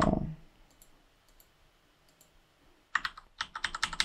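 Typing on a computer keyboard: a few scattered faint keystrokes, then a quick run of keystrokes near the end.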